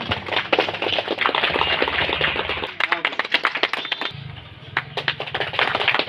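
A small crowd clapping unevenly, with voices in the background and a steady low hum.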